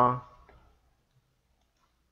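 A spoken word trailing off, then one faint computer mouse click as the presentation slide is advanced, followed by near silence.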